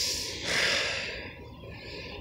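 A person breathing out audibly, a voiceless breath about half a second in that fades away.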